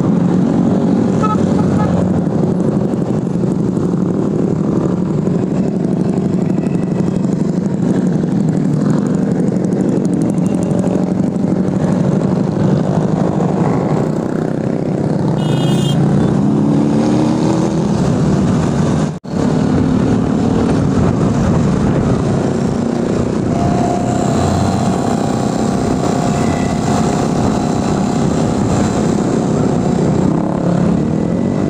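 Motorcycle and scooter engines droning steadily in road traffic, mixed with road and wind noise. The sound cuts out briefly about two-thirds of the way through.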